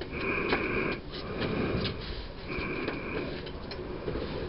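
Heavy breathing close to the microphone: three noisy breaths about a second apart, with a few faint clicks between them.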